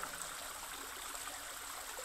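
Faint, steady sound of flowing water, like a gentle stream, as a background ambience bed.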